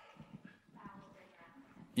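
Faint, distant voice speaking away from the microphone, with small scattered knocks and rustles from the audience.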